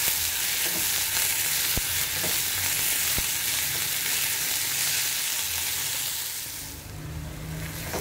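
Sliced onions sizzling in hot oil in a metal kadai while being stirred with a silicone spatula: a steady hiss with two or three light clicks in the first few seconds. The sizzle fades somewhat near the end.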